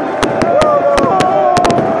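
Firecrackers going off in quick, irregular sharp cracks, several a second, over a large crowd singing and chanting.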